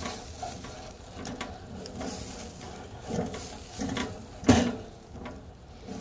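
A charcoal grill's wire grate being rubbed and knocked with an object held on a long-handled fork: irregular scraping and clicks, with one sharp, louder knock about four and a half seconds in.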